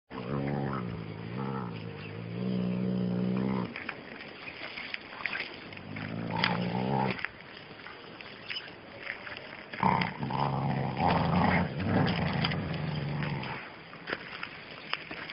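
Dogs growling while wrestling in play: long low growls in three runs, one in the first few seconds, a short one about six seconds in, and a longer stretch from about ten seconds until shortly before the end. Short clicks are heard between the growls.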